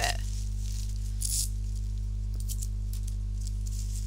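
Steady low electrical mains hum, with a few faint rustles of tissue paper being handled, the loudest a little over a second in.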